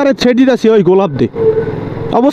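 A man talking while riding, over the running of his motorcycle and road noise. About a second in he pauses, leaving the engine as a steady hum with wind and traffic noise.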